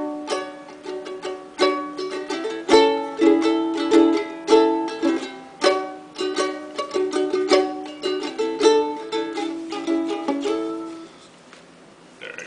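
Kamaka ukulele strummed through a run of chords, stopping about a second before the end.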